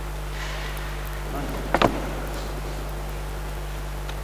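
Steady electrical hum through the sound system's microphone line, with a sharp double knock about two seconds in from the headset microphone being handled.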